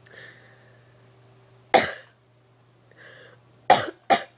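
A person with a cold coughing: two short, sharp coughs about two seconds apart, each after a softer intake of breath, over a low steady hum.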